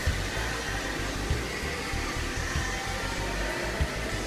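Steady rushing noise with an uneven low rumble underneath.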